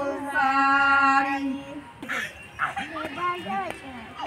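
Women's voices singing a folk song, holding one long note that stops about halfway through, followed by several voices talking.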